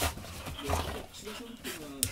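Golden retrievers play-wrestling: scuffling and knocks from their bodies and paws, with short dog vocalisations such as whines and pants.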